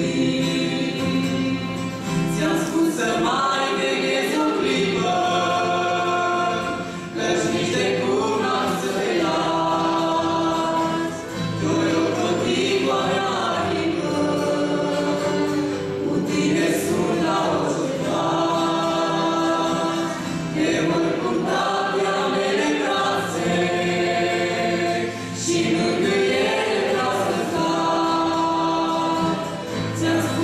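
A young woman and a young man singing a Romanian Christian worship song as a duet, in sung phrases broken by short breaths, accompanied by a strummed acoustic guitar.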